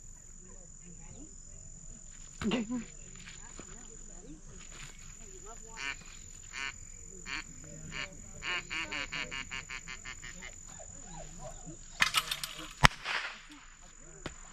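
A run of short pitched calls, about four a second, then near the end a burst of noise and a single sharp crack, typical of the blank shot fired as a duck is thrown for a retrieving test.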